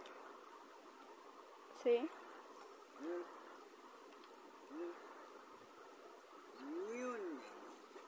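Faint steady outdoor background with a few short voice sounds: a brief "sí" about two seconds in, two more short sounds after it, and a longer rising-then-falling hum near the end.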